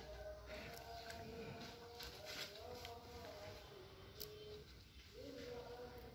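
Quiet background with a faint, distant melody of long held notes that step up and down in pitch, and a few soft clicks.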